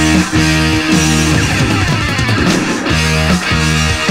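Heavy metal band playing an instrumental passage: distorted electric guitar and bass on a repeating riff, with drums and no singing.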